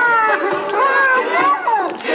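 Several children's high voices calling out together, rising and falling in pitch.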